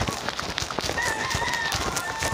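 Heavy rain pattering down, with sharp drop hits close by. About a second in, a rooster crows once in a drawn-out call, trailing off near the end.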